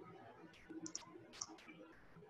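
Faint, scattered clicks, about five in two seconds, from a computer being worked, over a quiet room background.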